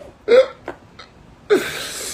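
A man laughing in short, hiccup-like spasms: a brief yelp that falls in pitch, a smaller catch, then a breathy wheezing laugh about one and a half seconds in.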